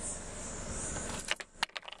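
A steady hiss of open air, then a quick cluster of sharp clicks and rattles near the end.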